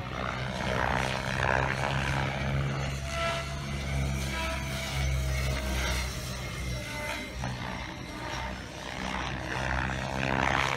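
Radio-controlled 3D aerobatic helicopter flying manoeuvres at a distance, its rotor and motor sound steady, under background music.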